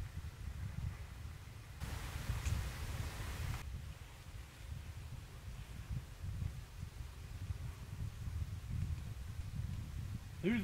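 Quiet outdoor night ambience: a low, uneven rumble, with a brief patch of hiss about two seconds in.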